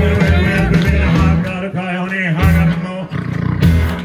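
Live rockabilly band playing, with a pulsing upright-bass beat under the band. About two seconds in the band briefly stops and a loud vocal yell rings out before the music kicks back in.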